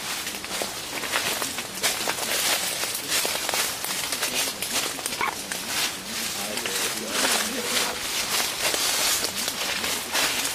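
Leafy coffee branches and dry leaves rustling and crackling in a dense run of quick, irregular snaps as the plants are pushed through and handled to hand-pick coffee cherries.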